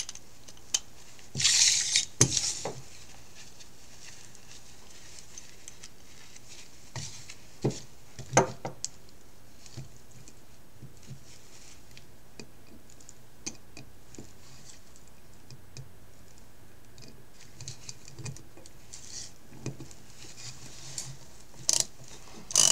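Handling noise of a hand tool and small metal parts on a wooden table: scattered sharp clicks and knocks, with a brief scraping rustle about a second and a half in and a quick cluster of clicks near the end.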